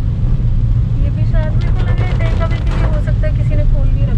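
Steady low road and engine rumble heard inside a moving car driving on wet streets, with a person talking over it from about a second in.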